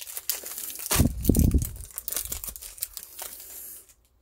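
Foil Pokémon booster pack wrapper crinkling and tearing as it is ripped open by hand, with one brief louder, deeper handling noise about a second in.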